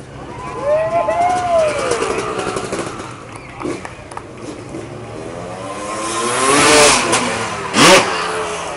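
Freestyle motocross dirt bike engine revving as the bike accelerates toward the jump ramp. The pitch climbs and it gets louder, peaking just before the take-off, with a sharp blip of throttle near the end.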